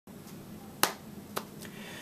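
A few sharp clicks over a low steady hum: a loud one a little under a second in and a weaker one about half a second later.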